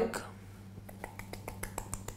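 Light, quick clicks and taps as chopped garlic is scraped and knocked out of a small bowl into a glass mixing bowl, about a dozen irregular ticks in the second half, over a faint steady hum.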